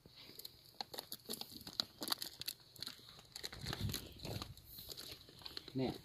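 Dry, cracked clay clods being broken apart and pulled loose by hand, with crumbling soil scraping and trickling: a string of irregular crunches and scrapes.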